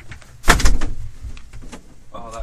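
A sudden loud knock about half a second in, with a short rattle dying away after it.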